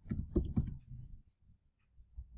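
Computer keyboard keystrokes clicking in a quick run over the first second, then stopping.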